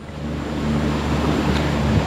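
Small boat's motor running under way and getting louder as the boat picks up speed: a steady low hum under a wash of engine and water noise.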